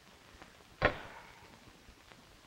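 A single sharp knock about a second in, with a short ring after it: a clothes iron knocking down on a wooden ironing board.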